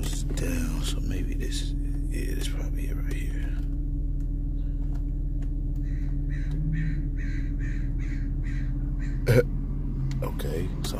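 2002 BMW 325Ci's straight-six engine idling steadily, heard from inside the cabin. In the second half there is a run of about eight short harsh calls, and near the end a single sharp click.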